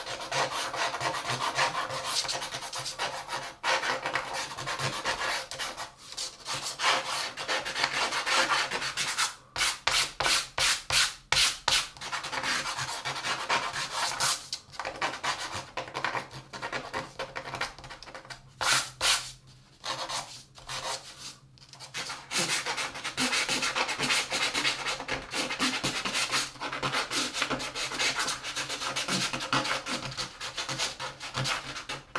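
A tool rubbed and scratched across watercolour paper, lifting out lights in the painting. It is a steady scratchy scrubbing, with runs of quick, regular back-and-forth strokes about a third of the way in and again just past the middle.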